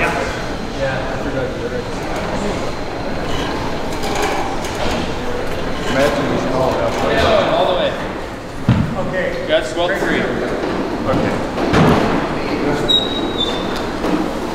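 Hand-crank material lifts being cranked down under a heavy countertop, with metallic clanks and knocks from the lift masts and a short high squeak near the end, under the crew's low voices.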